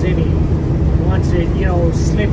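Steady low drone of an MCI MC5B coach's diesel engine and road noise, heard from inside the cabin at highway speed.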